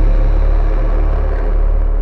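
The deep, rumbling tail of a cinematic boom hit in an intro sting. It holds steady, then begins to fade near the end.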